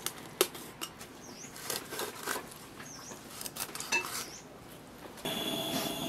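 Chinese cleaver scoring a carp on a wooden chopping block: scattered light knocks and clicks as the blade cuts through the fish and taps the wood. About five seconds in, a steady hiss takes over.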